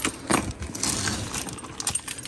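A cardboard box being opened with a multi-tool: the blade scrapes through packing tape and cardboard, with several sharp metallic clinks from the tool.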